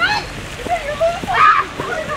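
Excited shouting from people running a piggyback race, loudest about one and a half seconds in, with a few dull thuds of running feet on grass.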